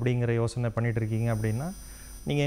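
A man speaking Tamil in a talk-show interview, breaking off near the end, with a low steady hum underneath.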